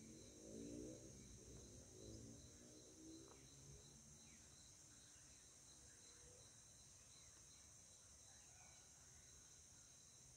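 Near silence: a faint, steady high-pitched insect chirring, with faint low sounds in the first few seconds.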